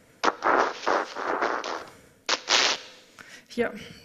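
Cochlear-implant simulation of a spoken sentence, processed through very few channels, so the voice turns into hissing, noise-like syllables that are hard to understand. One phrase plays in the first half, and a short burst of hiss follows.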